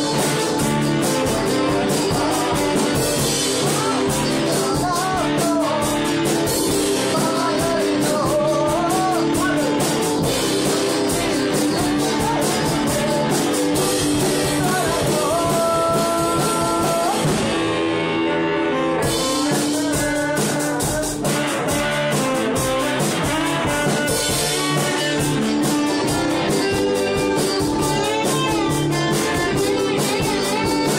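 A small band playing a song live in a room: a saxophone carries the melody over electric guitars, including one long held note about halfway through.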